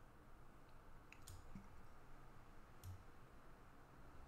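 Near silence, with a few faint computer-mouse clicks.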